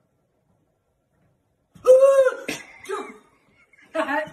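After near silence, a woman's short, loud startled scream about two seconds in, followed by a second, shorter cry.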